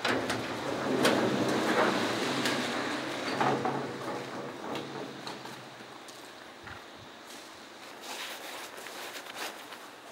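A garage door being opened by hand, sliding and rattling loudly for about four seconds, followed by quieter clicks and rustling of handling.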